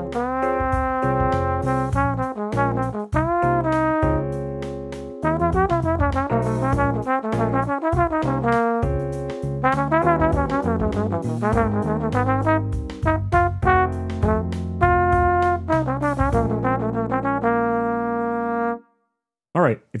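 Bach 36 tenor trombone playing one improvised jazz blues chorus: quick runs of sixteenth notes with bent and slurred notes, then one long held note that stops shortly before the end.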